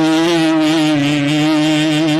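A man's voice holding one long chanted note, nearly level in pitch with a slight waver, in the intoned style of an Islamic sermon's prayer passage.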